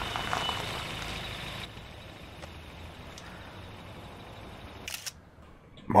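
A TV drama's scene background: a steady low rumble with faint hiss. It breaks off with a short click about five seconds in, then drops to near silence.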